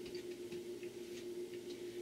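Quiet indoor room tone: a faint steady hum with a few light ticks.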